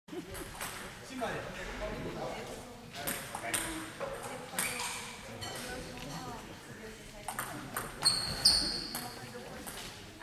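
Table tennis balls clicking sharply off bats and tables in an echoing sports hall, over a background murmur of voices. About eight seconds in, a short high squeak sounds twice.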